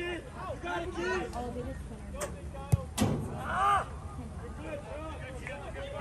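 A soccer ball struck hard once, a sharp thump about two and a half seconds in, with players and spectators shouting across the field and one loud yell just after the kick.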